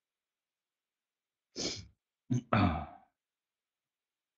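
A man's breath sounds: a quick sharp intake about a second and a half in, then a louder voiced sigh half a second later.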